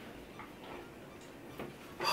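A few faint, light clicks, irregularly spaced, as fingers handle a small pressed eyeshadow pan in its plastic-backed casing.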